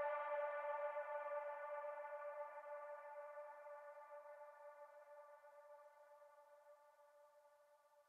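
Electronic music ending on one long held synthesizer note that fades out slowly and evenly: the track's closing fade.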